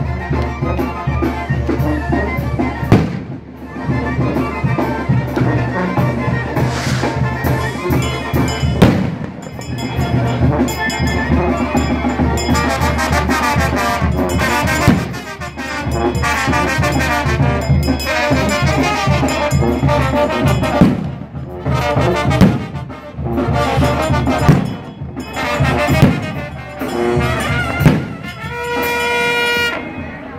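Brass band playing on the march: trumpets and trombones over a tuba bass, with sharp hits now and then and a long held note near the end.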